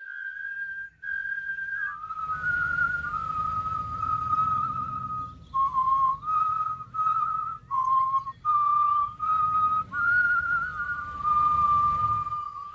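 A person whistling a tune: held notes stepping up and down in pitch, with short breaks between phrases. A low rumble runs underneath from about two seconds in.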